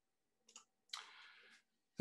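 Near silence on a video call, with a faint click about half a second in and a brief, soft noise about a second in.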